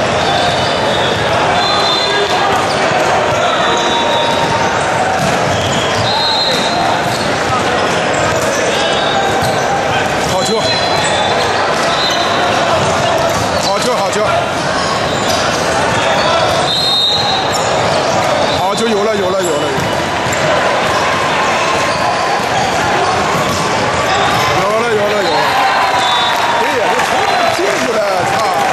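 Indoor volleyball rally in a large gym: sneakers squeaking in short high chirps on the hardwood court and the ball being struck and hitting the floor, over a steady babble of spectators' and players' voices.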